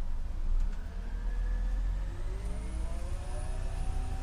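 Orion VII CNG city bus engine running with a low rumble, then pulling away: from about two seconds in, a whine rises in pitch as it accelerates, with a thin high-pitched tone over it.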